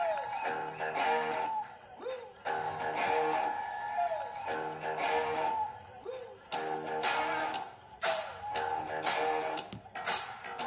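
Instrumental song intro led by guitar, with a sliding note every couple of seconds; from about six and a half seconds in, sharp percussion hits join.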